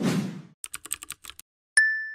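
Animated end-screen sound effects: a short whoosh, then a quick run of about eight keyboard-like typing clicks, then a single bright ding that rings on near the end.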